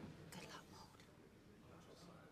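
Near silence in a hushed room, with faint whispering; a short whispered hiss comes about a third of a second in.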